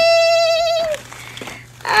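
A woman's voice singing a drawn-out "bing!" on one steady high note for about a second, ending a little before speech resumes.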